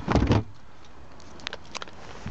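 Boot floor panel of a Saab 9-3 estate lowered shut over the spare-wheel well: one short thud with a rattle right at the start, followed by a few light clicks.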